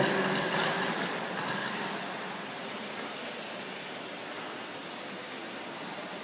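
Radio-controlled 1/12-scale race cars running on an indoor carpet track, a high whine and tyre noise passing close at the start and again about a second and a half in, then fading to a steadier, quieter hum of the field further away.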